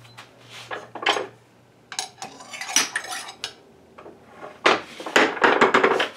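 A skew chisel cutting into the end grain of a spinning, freshly cut green apple branch on a wood lathe, slicing thin shavings that peel out into fuzz. The cuts come in irregular scraping bursts: about a second in, again through the middle, and near the end.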